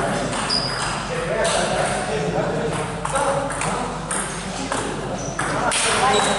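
Table tennis being played: a plastic ball clicking off paddles and bouncing on the table in an irregular rally rhythm, in a large hall.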